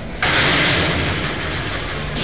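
A sudden, steady burst of hissing noise, like a static or whoosh sound effect, starting a moment in and holding until it stops just at the end.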